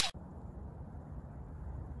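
The tail of an intro swoosh cuts off at the very start, then faint steady outdoor background noise, mostly a low rumble, from a phone recording.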